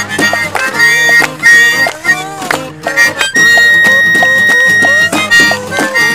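Harmonica solo over two strummed acoustic guitars, with one long held harmonica note about halfway through.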